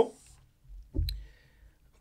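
A low bump with a single sharp click about a second in: things being handled on the desk close to the microphones, a tablet and papers.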